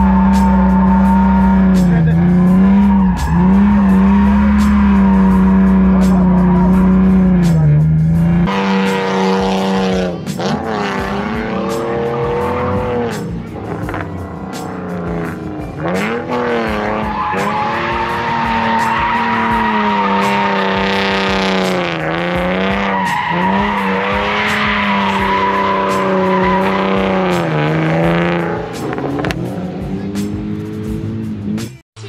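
BMW E46 M3's straight-six engine held at high revs through a drift, the revs dipping briefly and climbing back several times, with tyres squealing. For the first eight seconds or so it is heard inside the cabin, with a deep rumble; after that it is heard from beside the track.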